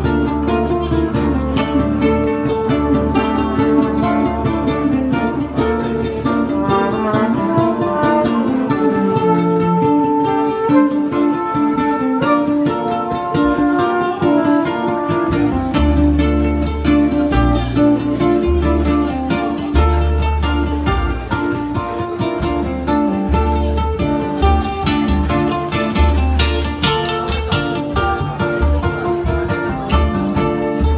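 Amplified ukulele picking a jazz tune, with a double bass playing low notes underneath that come in stronger from about halfway through.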